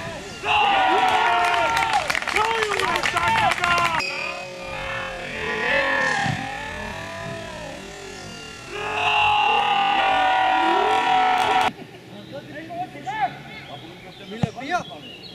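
Men shouting and cheering as a football goal goes in, with many sharp clicks through the first burst. The same cheer is heard again in a second burst, then it cuts off suddenly.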